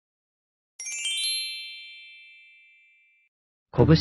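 A bright, high chime sound effect: a quick cluster of bell-like tinkles about a second in, ringing on and fading away over about two seconds. Near the end a synthesized narrator voice says "kobushi" as soft background music begins.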